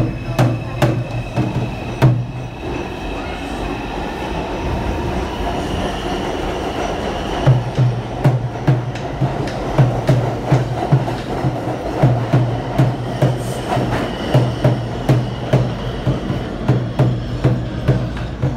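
New York City subway train (a 5 train) pulling out of the station and running past along the platform, a steady rumble of wheels on rails.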